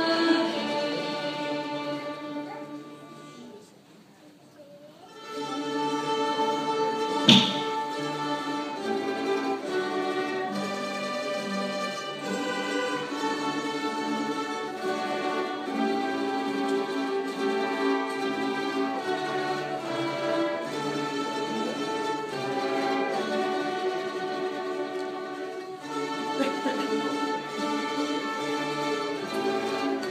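An orchestra led by bowed strings such as violins plays in a church. The music fades to a short pause about four seconds in, then starts up again. A single sharp knock sounds a couple of seconds after it resumes.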